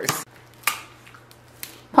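A few sharp clicks and knocks, the strongest just over half a second in, over a faint steady low hum.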